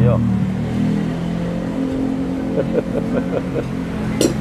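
A steady low droning hum, with a few soft voice sounds about three seconds in.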